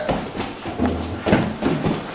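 Several thuds and scuffs from two fighters clinching and scrambling on foam floor mats, with bodies and feet hitting the mats.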